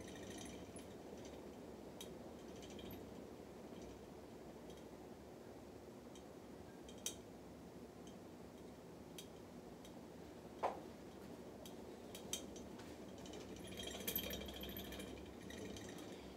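Faint steady whir of a spinning ceiling fan, with scattered small clicks and knocks and a couple of brief rustling patches near the start and about fourteen seconds in. The loudest sound is a short falling squeak about ten and a half seconds in.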